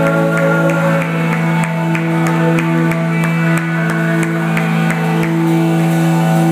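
Live worship band playing an instrumental passage on keyboard and guitar: long held chords over a steady low note, with a regular pulse of short accents several times a second.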